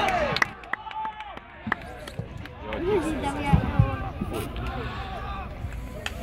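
Scattered shouts and calls of players across a football pitch, with a few sharp knocks in the first couple of seconds.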